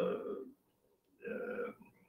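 A man's voice making two drawn-out hesitation sounds, "uh", with a silent gap of about three-quarters of a second between them; the second is shorter and quieter.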